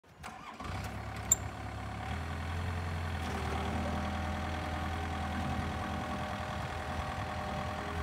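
Diesel engine of a Takeuchi TB153FR mini excavator running steadily at low revs, with one sharp click about a second in.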